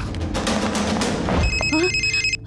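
Film soundtrack music with a low rumble, then about one and a half seconds in a mobile phone starts ringing, a steady high electronic ringtone, under a few words of speech.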